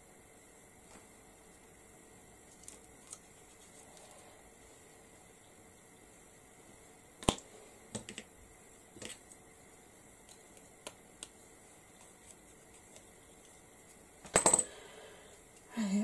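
Scattered light clicks and taps of small craft tools and a plastic syringe being handled and set down on a tabletop, over faint room tone; the sharpest single click comes about halfway through, and a quick cluster of louder taps comes near the end.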